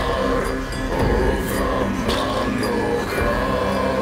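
Music: a man singing a slow, chant-like melody in Old Norse over a drone of bowed strings (tagelharpa, cello and violin), with occasional percussive hits.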